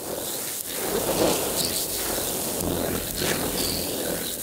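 Electronic noise texture from a light-sensor-controlled sound installation, synthesized and processed in Renoise and MicroTonic, swelling and fading as hands move over the sensors; a low hum joins about two-thirds of the way through.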